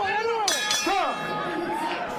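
Boxing ring bell struck about half a second in, ending the round, with ringing after the strike over crowd shouts and voices.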